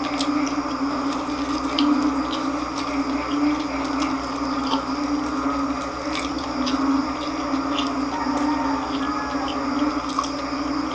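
A person chewing a mouthful of crispy deep-fried pork intestine (chicharon bulaklak) close to the microphone, with scattered short sharp mouth clicks. A steady low hum runs underneath throughout.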